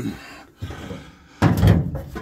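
A heavy thump, about one and a half seconds in, that lasts about half a second.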